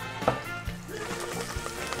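Background music over the sizzle of garlic frying in olive oil in a pan, hot enough to smoke.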